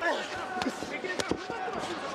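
Gloved punches landing in a kickboxing bout: a few sharp thuds, the clearest a little past a second in, with voices calling out over them.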